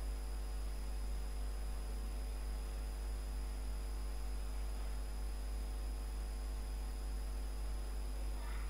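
Steady low electrical hum with a faint hiss and a few thin steady tones above it; nothing else happens.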